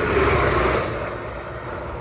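A vehicle passing close by on a motorway: a loud rush of tyre and engine noise that peaks early and fades over the next second or so.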